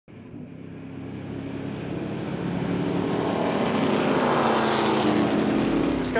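Race car engines growing steadily louder as they approach, their pitch falling in the second half as they pass by.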